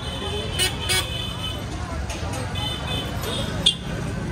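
Busy street sound: short vehicle horn toots several times over a steady traffic rumble, with the chatter of people around.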